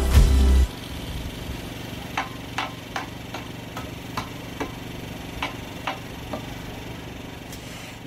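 Work on taking down a large totem pole: machinery running steadily with a low hum, and about a dozen sharp knocks and taps at irregular intervals.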